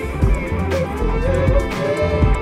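Live electronic music: a kick drum beating about twice a second under a deep sustained bassline, with a wavering melodic line above.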